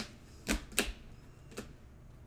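Rigid plastic card top loader handled in the fingers: four short, sharp plastic clicks and taps, the two loudest close together about half a second in.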